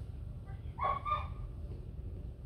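A short, high-pitched animal call in two quick notes about a second in, over a steady low rumble.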